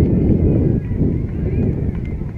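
Wind buffeting the camera's microphone, a loud low rumble, with faint distant voices.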